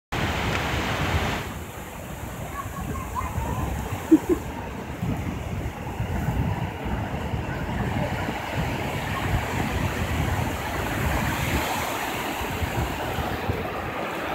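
Ocean surf breaking and washing over the shallow beach, a steady rush, with wind buffeting the microphone. A brief sharp sound stands out about four seconds in.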